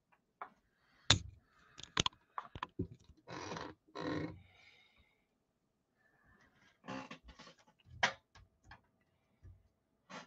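A sheet of comic art board being handled and set in place on a drawing surface: a scatter of sharp knocks and clicks with a few short sliding, rustling swishes in between.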